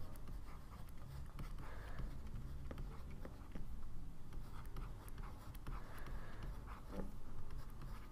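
Faint scratching and light ticking of a stylus writing by hand on a tablet, over a low steady hum.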